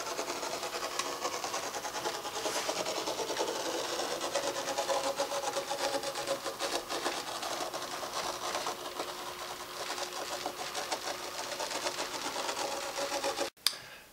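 A magnetic sand drawing machine running: its motor-driven gear train gives a steady mechanical whir with fast, fine ticking from the meshing teeth. The sound cuts off abruptly just before the end.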